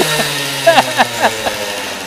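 Small moped engine running fast with a throttle that keeps sticking open, its pitch sagging slightly over the two seconds. A man laughs over it about a second in.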